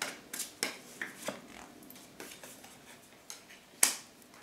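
Tarot cards being handled and drawn from the deck: a scatter of short clicks and rustles, with one sharper snap near the end.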